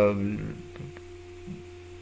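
A man's drawn-out "uh" trails off in the first half second, leaving a steady low electrical hum in the recording.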